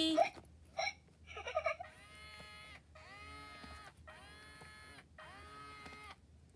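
Baby Alive Grows Up doll crying electronically: after a couple of short sounds, four even-pitched wails, each about a second long with brief gaps between them.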